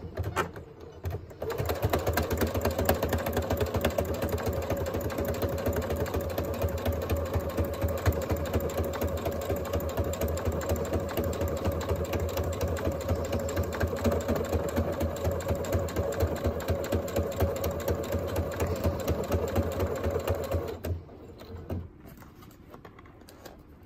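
Computerized sewing machine running a straight stitch through fabric, with a steady rapid rattle and motor hum. It starts after a few knocks in the first second or so and stops about a second before the end.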